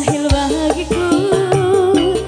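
A woman singing a wavering, ornamented melody into a microphone over a live dangdut band, with a steady drum beat and sustained keyboard-like notes, amplified through a PA system.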